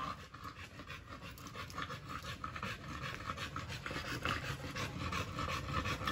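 A dog panting quickly and steadily, getting gradually louder.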